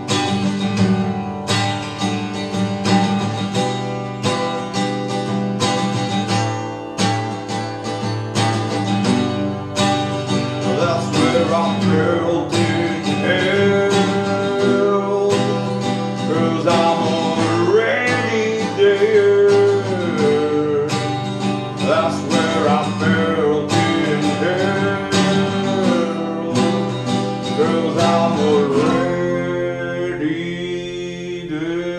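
Two acoustic guitars strumming chords in an unplugged instrumental passage. From about ten seconds in, a melody line that slides and bends in pitch plays over them.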